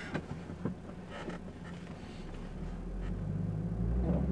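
Cabin sound of a BMW 520i F10 with its 2.0-litre TwinPower Turbo four-cylinder engine: a low, steady engine drone that grows louder over the last two seconds.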